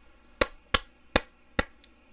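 A person clapping slowly with open hands, four single claps a little under half a second apart.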